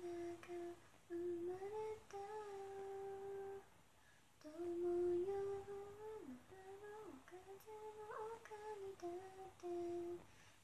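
A woman humming a tune in long held notes, with a short pause near the middle and two quick downward slides in pitch soon after.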